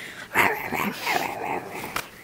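Close, whining and growling animal-like vocal sounds, loudest about half a second in.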